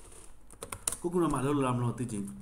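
A few quick keystrokes on a computer keyboard about half a second in, clicking sharply, then giving way to a man talking.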